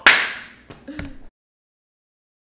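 A single sharp crack, like a slap or whip, that fades over about half a second, followed by a couple of light clicks; then the sound cuts off abruptly to silence.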